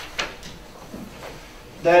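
A single sharp click about a fifth of a second in, then a couple of fainter ticks over low room noise. A man's voice resumes near the end.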